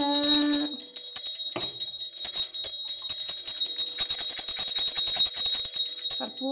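A puja hand bell rung rapidly and without a break, giving a bright, continuous ringing. A woman's chanting voice stops about a second in, leaving the bell alone.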